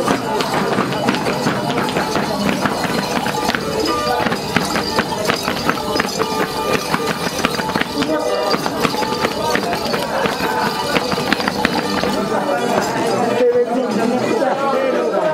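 A charango being strummed, with boots stamping on a hard floor and voices in a lively crowd. The strokes and stamps come thick and steady throughout.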